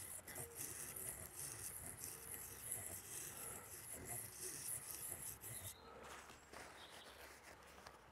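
Garden knife blade being rubbed on an oiled sharpening stone in a figure-of-eight motion, a faint, hissy scraping that stops about six seconds in.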